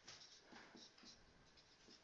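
Marker writing on a whiteboard: a few short, faint strokes.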